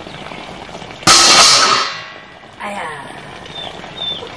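A steel cooking plate clangs once against metal cookware about a second in, ringing loudly and dying away within a second.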